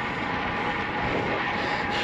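Steady rushing of wind and tyre noise from a road bike rolling along an asphalt road.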